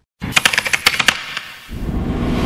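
A rapid run of sharp, typewriter-like clicks lasting about a second and fading away, then a low rumble setting in near the end.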